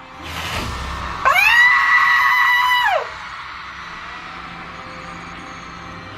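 One person's high-pitched scream of excitement. It rises, holds for about a second and a half, then drops away, over faint music from a stage performance.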